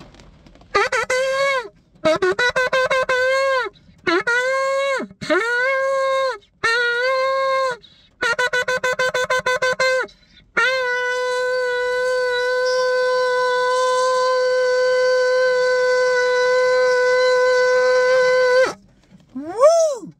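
A long twisted-horn shofar blown inside a car: a run of short blasts, some fluttering and broken up, most bending up into pitch and sagging at the end, then one long, level blast of about eight seconds.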